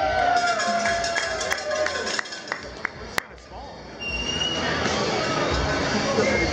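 Music and the voices of a crowd in a large hall. A string of sharp clicks runs through the middle, with one loud click about three seconds in.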